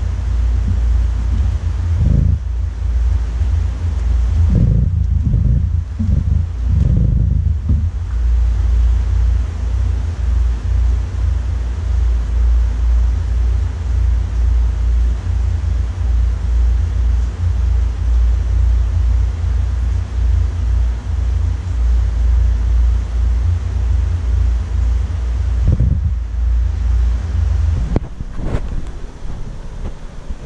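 Steady, loud low rumble of water and aeration in a large aquarium, with a few short louder surges about two seconds in, between about four and eight seconds, and again near the end.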